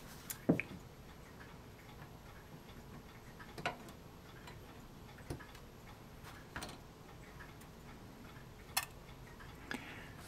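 A handful of faint, separate clicks and taps from hobby tweezers and side cutters handled against a plastic model-kit sprue, a couple of seconds apart and sharpest near the end, over quiet room tone.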